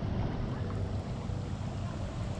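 Steady rushing of a shallow creek's current flowing over its rocky bed.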